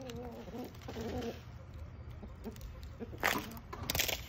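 Domestic chickens clucking in short low calls, most of them in the first second and a half. About three seconds in there is a brief, louder rustling burst.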